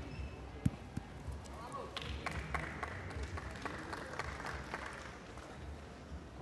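Indoor sports-hall ambience with background voices. There is one sharp knock just over half a second in. From about two to five seconds in comes a run of scattered sharp clicks or claps over a hiss-like haze.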